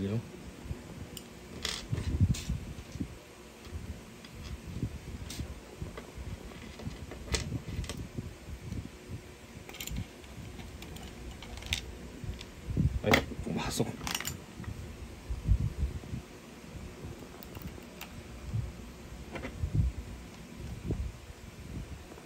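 A screwdriver driving screws into a plastic gel blaster receiver during reassembly: scattered small clicks, taps and metallic clinks with dull handling bumps, the sharpest clicks coming about two-thirds of the way in.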